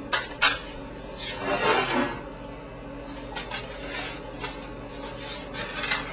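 Small serving plates being handled and set down on a wooden table: a few light clicks and knocks, over a low steady hum.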